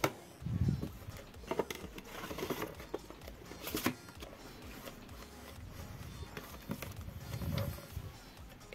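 Quiet background music with soft handling noises: paperback manga volumes being slid into a cardboard slipcase, giving light scrapes and a few small taps.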